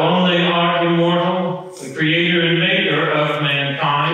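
A man's voice chanting liturgical text on one steady reciting note, in two long phrases with a brief break a little under two seconds in.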